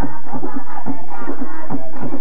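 Tambora alegre music: tambora drums beating a quick, steady rhythm under singing.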